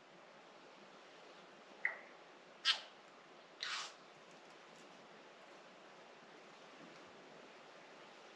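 New Zealand bellbirds calling: three short calls about a second apart, starting about two seconds in, the third fainter than the first two.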